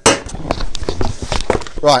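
Small cardboard box being opened and its contents handled: a sharp knock at the start, then scraping and rustling of cardboard and packing.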